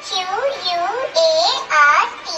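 A high child-like voice singing or chanting short sing-song syllables, its pitch swooping up and down.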